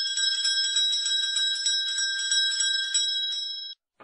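Electric school bell ringing: several steady high tones over a fast, even clatter of the striker hitting the gong. It cuts off suddenly shortly before the end.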